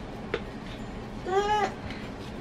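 A toddler's single short, high-pitched whine that rises and falls, coming a moment after a light click.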